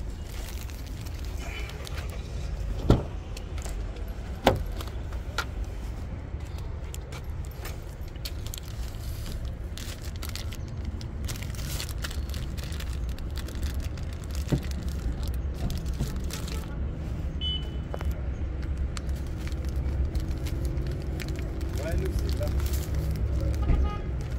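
Shopping handled in and around a car: a plastic-wrapped tissue pack rustling and being set down, with two sharp knocks a second and a half apart a few seconds in, all over a steady low rumble.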